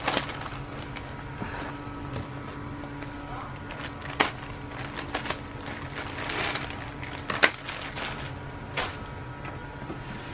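Rustling and handling of packaging as a shipping box is opened, with a few sharp clicks and knocks, the loudest about seven seconds in, over a steady low hum.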